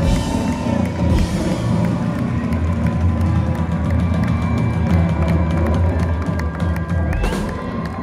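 Live rock band with drums, electric guitars, bass and strings ending a song on a held, ringing final chord; the drum and cymbal hits stop about a second in. The audience starts cheering and whooping near the end.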